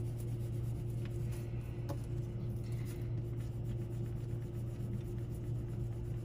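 White Crayola oil pastel rubbing on paper as it is worked over a colour to blend a tint, faint, over a steady low hum.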